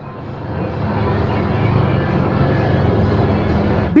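Steady low engine rumble of a motor vehicle, swelling over the first half second and then holding.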